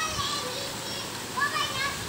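A young boy's high voice singing in short held notes that bend up and down.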